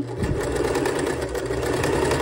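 Domestic electric sewing machine running steadily at speed, its needle stitching rapidly through the fabric layers of a waistband casing with elastic inside. It starts a fraction of a second in.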